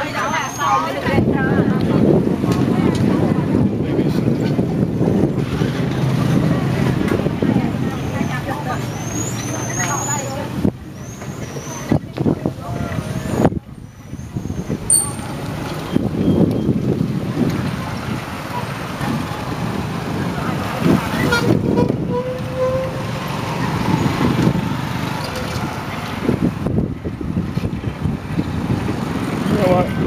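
Street traffic with small motorbike engines running and passing, over a continuous low rumble.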